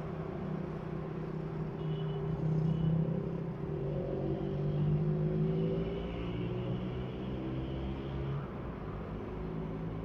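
A motor vehicle's engine running steadily, its pitch wandering a little, swelling slightly about three and five seconds in.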